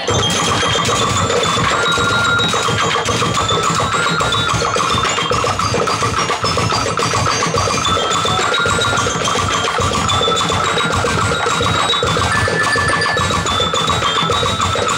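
A drumblek percussion band playing: a dense, driving rhythm beaten on plastic barrels, tin drums and bamboo, with a high pitched melody line over the drumming.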